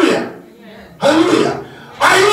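A man's voice over a handheld microphone in two short, loud vocal bursts about a second apart, which may be a throat-clearing.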